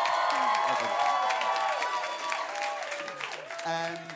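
Audience applauding, with voices calling out and cheering over the clapping; it eases off toward the end.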